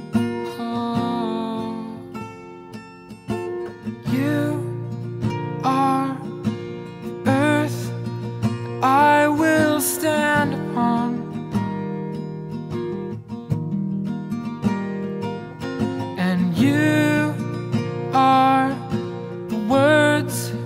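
Acoustic guitar playing sustained chords in an instrumental stretch of a love song, with a wordless, gliding vocal melody over it from about four seconds in.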